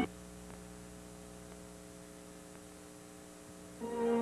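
Faint, steady mains hum with light hiss from an off-air VHS recording during a moment of dead air between broadcast segments. Just before the end, a held musical note begins.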